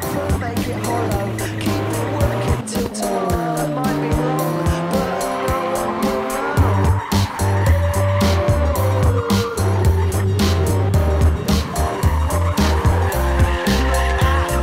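Backing music with a steady beat, mixed with a Mk1 Mazda MX-5's four-cylinder engine revving and its tyres squealing as the car slides sideways around cones.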